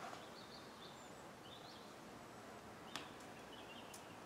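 Quiet outdoor ambience with small birds giving short, high chirps now and then, and a sharp click about three seconds in and another near the end.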